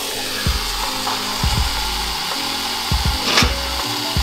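Aerosol can of whipped cream spraying into a stainless steel mixing bowl: a steady hiss that starts abruptly and keeps going, over background music with a regular beat.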